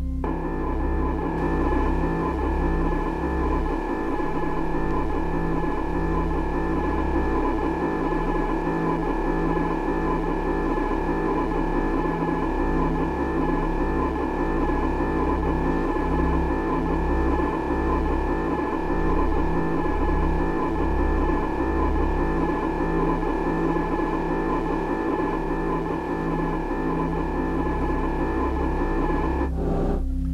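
Ambient background music: a steady drone of several held tones over a low, uneven pulse, with no change in pitch throughout.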